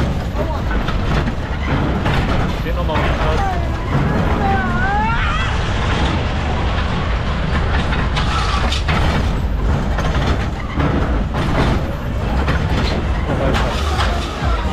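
Onride sound of a Reverchon Gliding Coaster car running along its steel track: a constant low rumble of wheels and wind on the microphone, with brief high sliding sounds about four to five seconds in. Near the end the car runs into the station.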